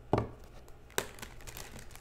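Tarot cards being handled and laid out on a table: a sharp tap just after the start and another about a second in, with light crinkling card sounds between.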